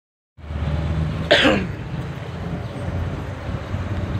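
A man's single short cough about a second and a half in, over a steady low rumble of street noise.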